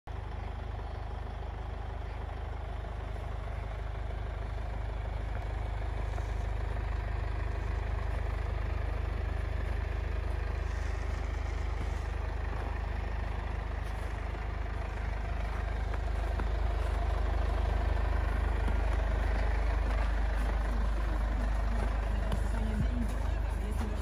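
Mercedes-Benz Sprinter 314 CDI diesel van engine idling with a steady low rumble, slightly louder in the second half.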